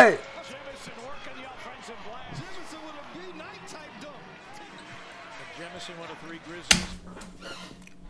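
Basketball game broadcast sound at a low level: a faint commentator's voice over a ball bouncing on the hardwood court, in many short sharp ticks. Near the end a single sharp click cuts it off, followed by a steady low hum.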